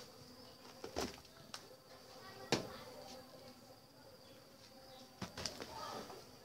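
A steady, high insect drone, with a few sharp knocks and taps. The loudest knock comes about halfway through, and two more come near the end.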